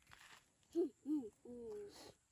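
A person's voice making three short wordless exclamations, two quick rising-and-falling calls and then a longer, level one near the end.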